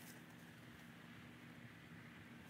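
Near silence: faint background with a steady low hum.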